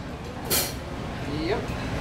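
Pause between a man's spoken announcements into a PA microphone, filled with low bar-room background noise. A short hiss comes about half a second in, and a faint brief rising vocal sound comes near the end.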